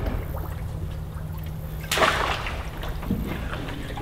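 A landing net swept into shallow water, with one sudden splash about two seconds in, over a low steady engine hum.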